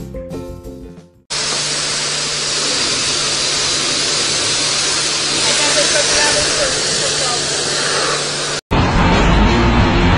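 A car-wash pressure-washer wand spraying water: a steady, loud hiss with a faint, even, low hum that runs for about seven seconds after the music fades out. Near the end it cuts off suddenly and a louder, rumbling noise takes over.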